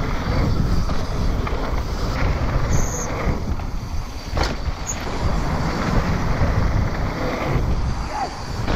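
Strong wind buffeting the camera microphone, a dense low rumble, over the noise of a mountain bike rolling fast down a dirt trail. A single sharp knock comes about four and a half seconds in.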